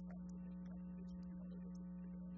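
Steady electrical mains hum in the audio feed, a strong low tone with a ladder of fainter higher tones above it, unchanging throughout.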